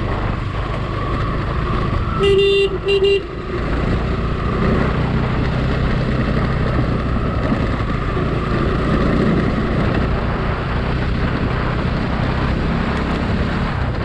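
Motorcycle engine running under way on a gravel road, with wind rushing over the microphone. A horn gives two short beeps about two seconds in.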